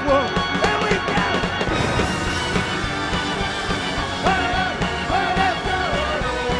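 A live rock band playing a song loudly, with electric guitars and a steady drum beat. Long held melody notes come in during the second half.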